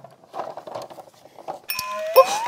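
Faint rustling and small knocks of hands rummaging through a cloth carpet bag. Near the end a steady bell-like ringing with several tones begins.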